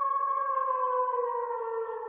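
A long held tone with a stack of overtones, sliding slowly down in pitch and beginning to fade near the end, as part of a channel outro sting.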